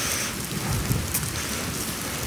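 Rain falling close to a phone's microphone: an even hiss of rain with a few faint ticks of drops.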